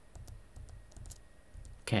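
A few light clicks of computer input, stepping a chart replay forward bar by bar.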